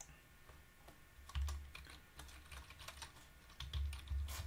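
Typing on a computer keyboard: scattered, irregular keystroke clicks, with a couple of dull low thumps, one about a third of the way in and one near the end.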